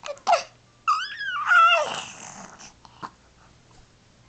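Baby squealing: a short breathy burst, then about a second in a high-pitched squeal that bends up and then falls away.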